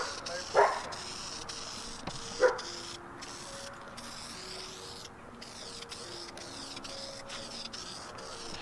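Aerosol spray paint can hissing as paint is sprayed onto a fabric convertible top. A dog barks three times in the first few seconds.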